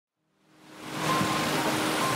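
Small mountain creek rushing and splashing down a little rocky cascade, a steady rushing of water that fades in from silence during the first second.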